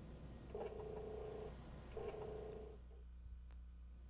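Apple IIGS floppy disk drive reading the disk in two faint bursts of about a second each while files are extracted from it.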